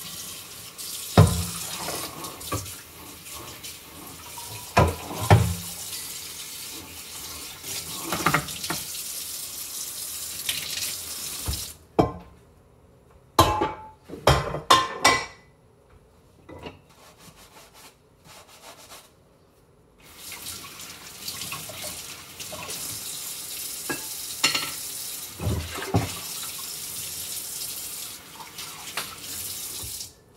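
Kitchen sink faucet running while dishes and a pan are washed under it, with knocks and clinks of crockery and metal. The water stops about twelve seconds in, leaving a few clinks, then runs again about eight seconds later.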